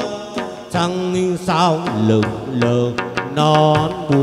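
Chầu văn ritual music: a male singer's ornamented vocal line, with a wavering, vibrato-laden passage about a second and a half in, over a đàn nguyệt (moon lute) and struck drum and cymbal percussion.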